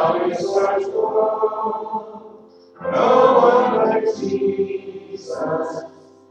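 A church congregation singing a hymn, in two sung phrases with a short break about two and a half seconds in.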